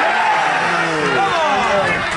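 Football spectators shouting and cheering together as a goal goes in, many voices at once with long falling yells.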